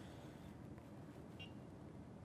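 Near-silent room tone with one faint, very short electronic beep about one and a half seconds in, from an electronic pan balance as its tare button is pressed.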